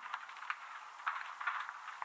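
Faint crackling static with scattered small ticks, the noisy tail left once the electronic outro music has faded.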